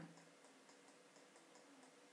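Near silence: room tone with faint, evenly spaced ticking, about four ticks a second.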